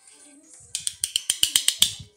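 A rapid run of about ten sharp, ratchet-like clicks, roughly seven a second, starting a little under a second in and growing louder before stopping.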